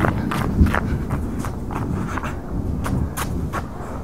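Quick footsteps of people running on bare dirt ground, a string of sharp steps about two to three a second.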